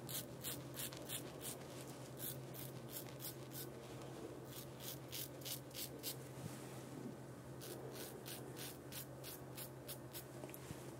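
Double-edge safety razor (QSHAVE short-handle classic) scraping through lathered stubble: short, quick strokes, about three a second, in three runs with brief pauses between.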